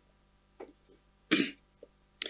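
A man clears his throat with a couple of small sounds, then gives one short cough a little over a second in, as his voice is starting to give out.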